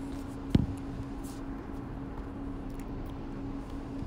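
Steady low hum under background noise, with one sharp knock about half a second in.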